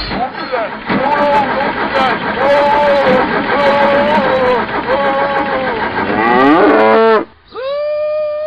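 An engine running, with a pitched call sounding over it five times about a second apart, then a longer call that sweeps in pitch. The engine noise stops suddenly about seven seconds in, and a single long steady tone follows.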